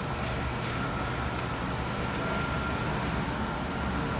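Steady low drone of coin-operated commercial laundry machines running, with a faint steady high whine above it.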